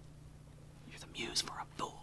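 A man whispering a few words under his breath, starting about a second in, over a faint steady low hum.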